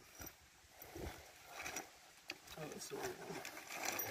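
Faint, indistinct voices of people talking at a distance, with light rustling and one short click about two and a half seconds in.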